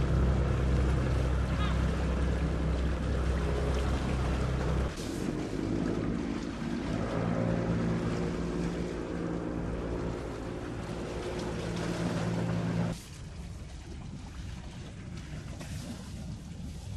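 Low, steady drone of boat engines running on the harbour water. The drone changes character abruptly about five seconds in, then falls away near the thirteen-second mark to a fainter background of wind and water.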